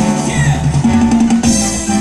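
Salsa music with a steady beat: bass line, drums and percussion.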